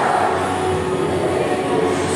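Loud, steady din of an indoor arcade game zone, with a few sustained tones running through it.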